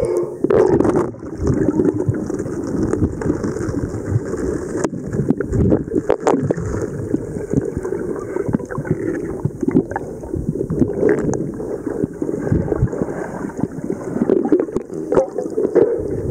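Muffled underwater sloshing and gurgling picked up by a waterproof camera held underwater, with frequent small knocks and clicks as water and hands move against the camera body.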